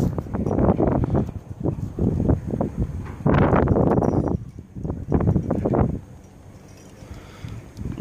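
Close rustling and scraping of rope and clothing against the microphone: a quick run of short scrapes, a longer, louder rush of noise a little over three seconds in, then more scrapes that die down at about six seconds.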